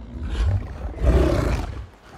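A giant wolf's deep, rumbling growl in two swells, the second louder, fading near the end.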